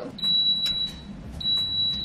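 Electric pressure cooker's control panel giving two long, high electronic beeps, the second slightly longer. They come as the cooking program is set and the cooker starts up.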